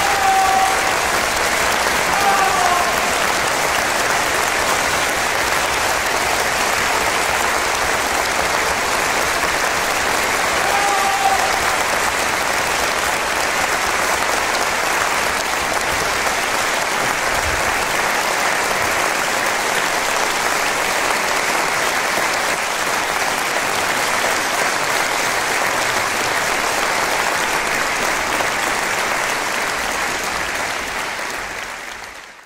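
Concert-hall audience applauding steadily after an orchestral and vocal performance, with a few short calls rising above the clapping near the start and about eleven seconds in.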